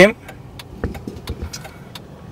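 Car rolling slowly, heard from inside the cabin: a low, even rumble with a few soft knocks about a second in.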